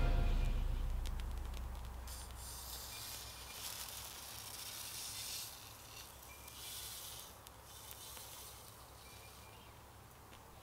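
Soft hissing that swells and fades in waves as a wet sample of platinum complex is heated on aluminium foil. No bang: the complex fails to explode.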